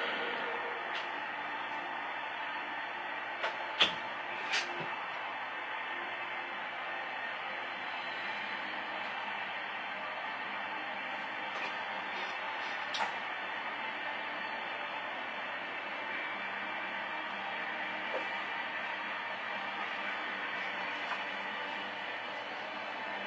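Faint video game audio from a TV over a steady hiss, with a few soft clicks about four seconds in and again around thirteen seconds.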